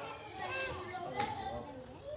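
Quiet background chatter of guests in a hall, with children's voices, and a short click about a second in.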